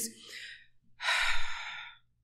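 A woman's breath close on the microphone between phrases: a faint breath, then a louder, pitchless breath lasting about a second.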